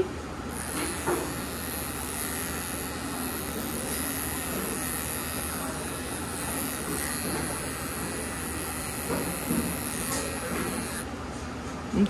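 Electric dog clippers with a #10 blade running steadily as they cut a Scottish Terrier's coat around the cheek and ear. A high whine in the sound stops about a second before the end.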